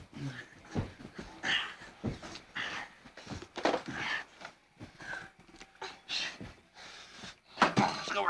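Short, irregular breathy panting and small vocal noises close to the microphone, with a louder run of voice near the end.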